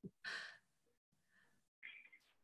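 Near silence, with one short faint exhale of breath about a quarter second in.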